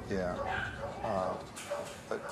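A small Chihuahua-mix dog making a few short vocal sounds over a spoken "yeah".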